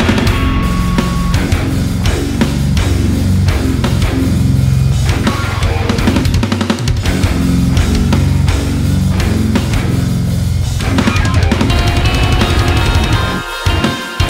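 Heavy rock guitar playing over a driving drum beat, dense and loud, with a brief break near the end.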